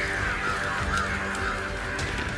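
A flock of crows calling, many short harsh calls overlapping one another throughout, over background music.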